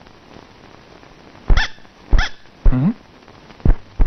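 Four short barks, about a second apart.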